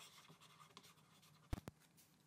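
Faint scratching and tapping of a stylus writing on a tablet, with two sharper taps about a second and a half in.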